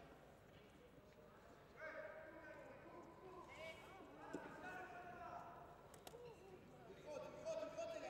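Faint voices calling out across the hall, with a soft knock a little after four seconds in.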